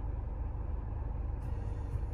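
Steady low rumble of a car's engine idling, heard from inside the cabin.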